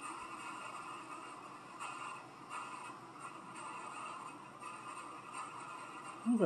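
Faint, steady hiss with a couple of soft bumps.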